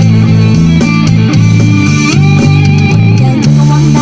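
Electric bass guitar plucked with the fingers, playing held low notes that change about every half second, along with a backing song with drums.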